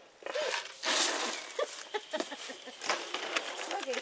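A pig grunting in short bursts, with a louder rushing noise about a second in and scattered knocks and rustles as a feed bowl is reached for through the gate in a straw-bedded pen.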